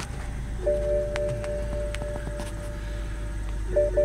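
Electronic warning tone from the BMW E60's dashboard, a steady tone of two or three pitches that starts about half a second in and stops just before the end. Under it is the low steady hum of the engine idling just after start-up.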